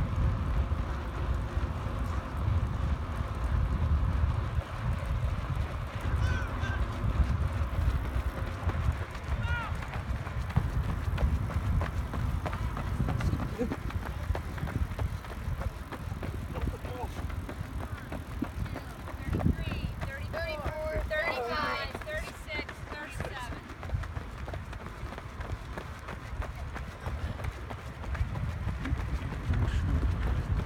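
Footfalls of a small pack of runners on a rubberised running track, under a steady rumble of wind buffeting a moving microphone. A voice calls out faintly about twenty seconds in.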